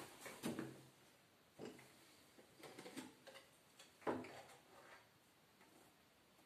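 Faint footsteps and a few soft knocks and clicks, spaced irregularly, as a small tabletop telescope is handled.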